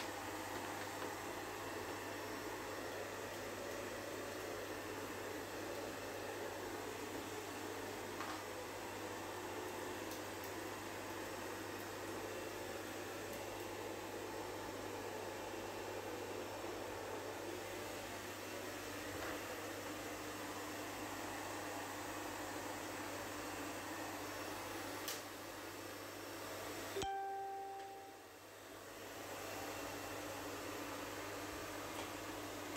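Hand-held hairdryer running steadily with a low hum, softening the melamine film so it can be peeled off the cabinet door. The sound drops away sharply about three seconds before the end, then comes back.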